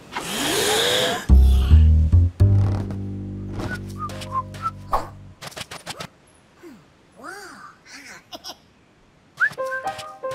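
Cartoon soundtrack of music and comic sound effects. It opens with a noisy whoosh and a rising whistle, then low held notes with clicks over them, then a run of short squeaky up-and-down glides before the music picks up again near the end.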